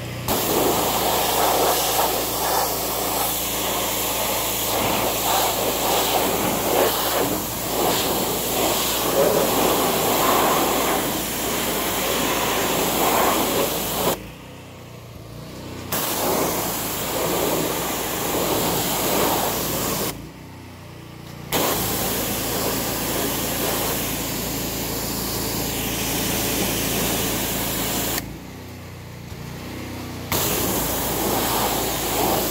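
Pressure washer spray hitting a zero-turn mower to rinse off cleaning foam, a loud steady hiss over a low running hum. The spray cuts out three times for a second or two, near the middle, a little later, and near the end, while the hum carries on.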